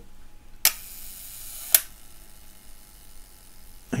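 Leica M3 cloth focal-plane shutter fired at its 1-second speed: a sharp click as it opens about half a second in, a faint whirring of the slow-speed governor, then a second click as it closes just over a second later.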